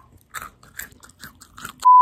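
Someone chewing nuts with a quick, irregular run of crisp crunches. Near the end a loud, steady electronic beep cuts in.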